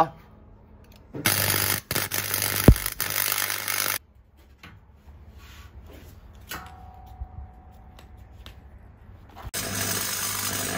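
Wire-feed (MIG-type) welder tack-welding steel: the arc runs as a loud hiss over a steady low hum for about three seconds with a short break, stops, then strikes again near the end.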